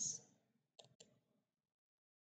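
Two quick computer mouse-button clicks about a fifth of a second apart, a double-click.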